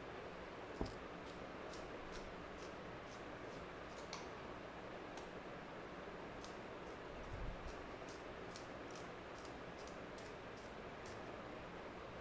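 Faint handling of a wooden pencil: scattered light clicks and ticks, with a soft knock about a second in and a dull thud past the middle, over a steady low room hiss.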